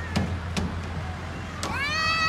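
A young child's high-pitched squeal that rises in pitch and then holds, starting near the end, after two soft knocks in the first second.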